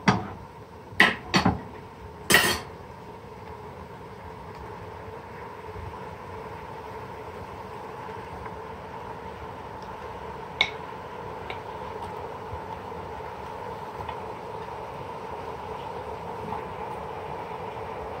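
A few sharp knocks on an aluminium cooking pot in the first couple of seconds as raw mutton pieces go in, then a steady background hum with a faint high whine and one small click.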